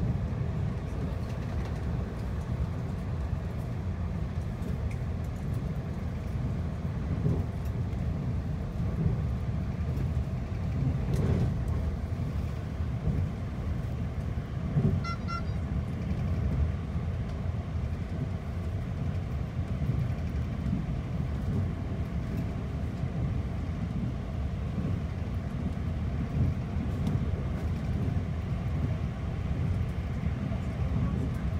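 Steady low rumble of a TEMU2000 Puyuma tilting electric multiple unit running at speed, heard inside the passenger cabin. A brief faint beep sounds about halfway through.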